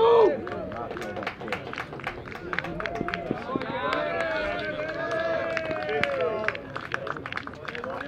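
A short loud shout, then a small crowd of spectators and players cheering, yelling and clapping as a runner is called safe at second base.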